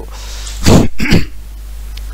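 A man clearing his throat, two short rasps about a second in, over a steady low hum.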